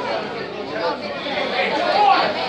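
Crowd chatter: many people talking at once across a large hall, with no single voice standing out.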